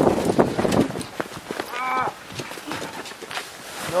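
People pushing a car stuck in snow: a flurry of boots scuffing and jackets rustling against the car, then a single short strained call about two seconds in.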